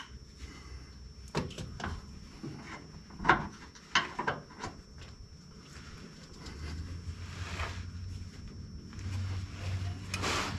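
Hand tools clinking and knocking against metal as a wrench is worked onto a hard-to-reach bolt under a truck, a scattered run of short knocks with the sharpest about a second and a half, three and four seconds in. A low steady hum comes in over the last few seconds.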